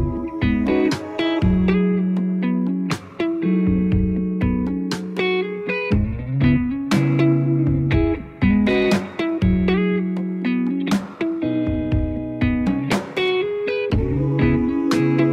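Electric guitar music: slow picked chords and single notes that ring on and change every half second to a second.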